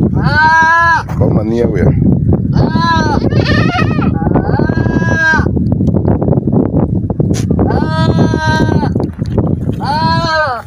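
Goats bleating, about six separate calls with some wavering in pitch, over a steady low background noise.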